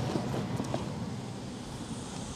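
A single short click, then faint steady outdoor background noise with wind on the microphone.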